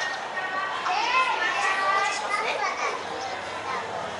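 Crowd chatter with children's high voices calling out and talking.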